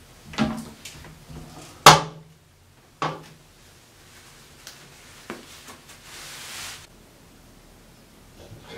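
Plastic toilet lid and seat being handled: a clatter, then a sharp, loud clack as the lid knocks against the tank, a second knock a second later and a light click.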